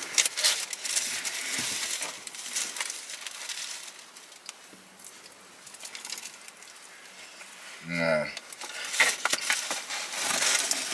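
Paper food packaging rustling and crinkling as a pizza slice is handled, with scattered clicks and taps, busiest in the first few seconds and quieter in the middle. A brief voice sound comes about eight seconds in.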